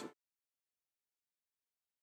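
Complete silence: the soundtrack cuts out abruptly at the very start and stays dead silent.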